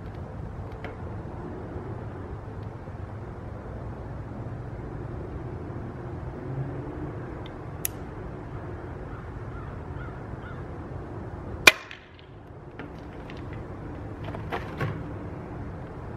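A single shot from a .22 Taipan Veteran Short PCP air rifle fitted with a Hill Airgun 8-inch suppressor: one short, sharp report about three-quarters of the way through.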